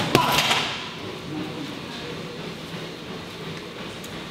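A hard gloved punch smacks into a heavy punching bag right at the start: the final hook that ends a fast body combination. A short hiss follows, then only low, steady room noise.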